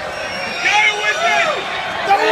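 A man's voice speaking over the low murmur of a crowd, the voice starting about half a second in.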